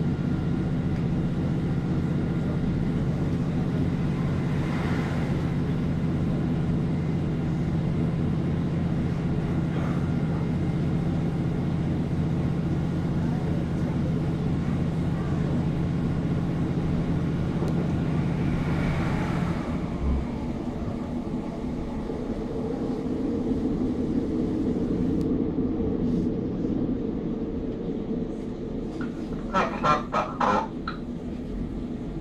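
A local diesel passenger train heard from inside the carriage, its engine humming steadily under the running noise at speed. About two-thirds of the way in the low engine note drops away and a lighter, higher running sound takes over. A few sharp clanks come right at the end.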